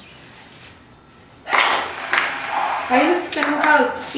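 Loose metal nails and screws clinking and rattling in a cardboard box as a hand rummages through them, starting about a second and a half in after a quiet start. A voice talks over it near the end.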